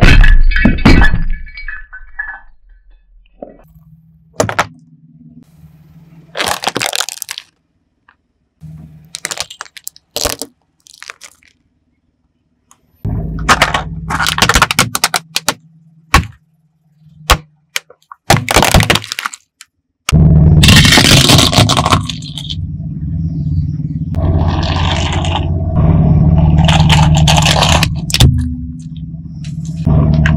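A car tyre rolling over and crushing objects: a ceramic figurine shatters with a loud crack at the start, then a string of sharp, separate cracks and crunches as a plastic toy car is flattened. The last third is a longer, steadier stretch of louder noise with a low hum.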